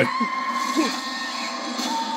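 Movie trailer soundtrack: a steady high tone held for about a second and a half, a second slightly lower tone starting near the end, and a couple of faint, brief voice sounds early on.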